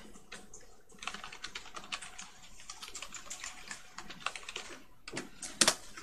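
Typing on a computer keyboard: a quick, uneven run of key clicks, with a few louder key strikes near the end.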